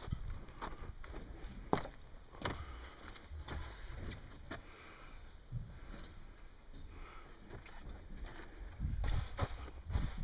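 Irregular sharp knocks and taps, roughly one a second, over a low rumble of wind on the microphone.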